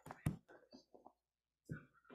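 Handling noise from a head-worn microphone being adjusted against the wearer's face: faint rustles and a sharp tap about a quarter second in.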